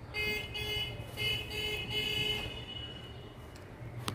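Felt-tip marker squeaking against a whiteboard as a word is written, a run of short squeals over the first two and a half seconds.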